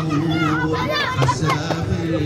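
Many children's voices at once, overlapping and calling out with rising and falling pitch, over a steady low hum.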